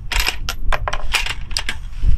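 Run of sharp metallic clicks, about four or five a second and unevenly spaced, from the elevation turret of a Leupold Mark 5 rifle scope being turned by hand.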